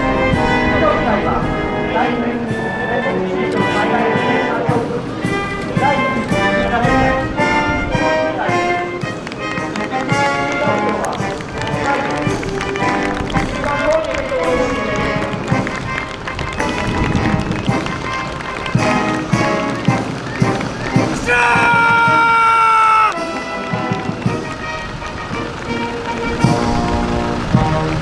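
Military band playing a march with a steady drum beat, and one long held note about three quarters of the way through.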